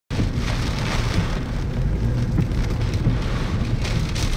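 Heavy rain falling steadily, with a constant low rumble beneath it.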